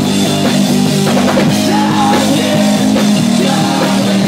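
Live band playing a loud rock number with a singer on vocals, heard from the audience with a thin bottom end.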